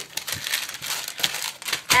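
Clear plastic packs of paper craft flowers crinkling as they are handled and moved about, with many short crackles.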